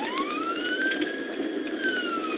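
Police car siren in wail mode, one slow cycle: the pitch rises steeply at the start, tops out about halfway through and then begins to fall.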